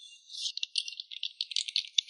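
Fast typing on a computer keyboard: a rapid, uneven run of key clicks starting about half a second in, thin and high-pitched with no low end.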